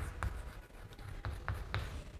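Writing strokes: a pen or marker scratching and tapping in a few short, irregular strokes.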